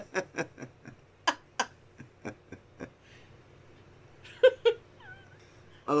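A person laughing: a run of short breathy pulses that fade away over about three seconds. Two short, louder voiced sounds follow about four and a half seconds in.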